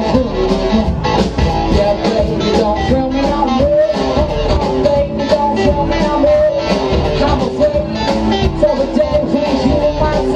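Live rock band playing: electric guitar, electric bass and drum kit with a steady beat, and a saxophone joining in.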